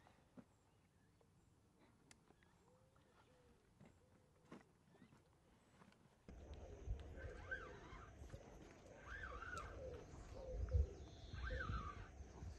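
Quiet lakeside ambience with faint scattered ticks. About six seconds in, it gives way to a louder low rumble with several short, repeated bird calls over it.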